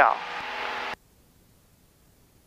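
Steady hiss of cabin noise over the aircraft's headset intercom that cuts off suddenly about a second in, leaving near silence as the voice-activated intercom gate closes.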